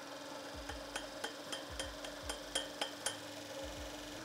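Large DC forklift motor spinning a freshly fitted chain sprocket on its shaft, with a steady low hum and a row of light ticks, about four a second, that stop shortly before the end.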